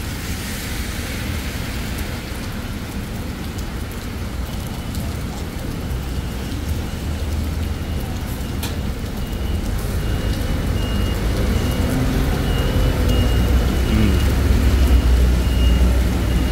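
Steady hiss of heavy rain mixed with road traffic, with a low engine rumble that grows louder through the second half.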